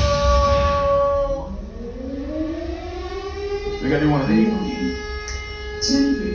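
A siren-like wail rising slowly over a couple of seconds and then holding a steady pitch, after a shorter held tone at the start. Brief voices cut in about four seconds in.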